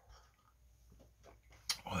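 A man quietly sipping hot coffee from a mug, with a few faint sips, then a loud satisfied "ahh" near the end.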